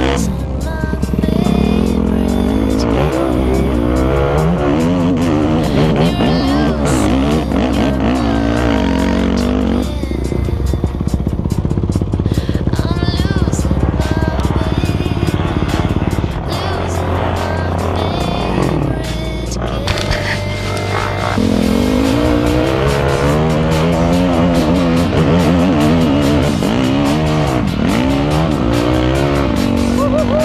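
Dirt bike engine revving hard under load on a steep uphill climb, its pitch sweeping up and down repeatedly as the throttle is worked, with music mixed over it.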